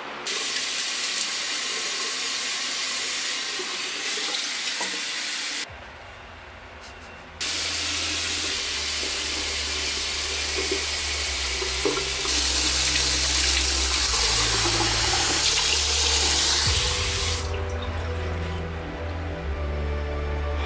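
Tap water running into a bathroom sink. It cuts out briefly about six seconds in, then runs again until a few seconds before the end. Bass-heavy music comes in as the water first stops and carries on under it.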